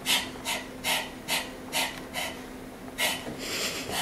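A woman panting hard through a wide-open mouth in short, sharp breaths, about two a second. After a brief pause there is a longer breath near the end, in a belly-breathing exercise.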